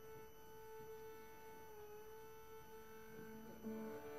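A single long, quiet violin note held steady. Near the end, lower bowed notes from the cello join it as the piece's introduction begins.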